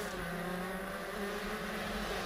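Honda CR125 two-stroke shifter kart engine running steadily at speed, heard on board the kart, with a haze of wind and track noise over it.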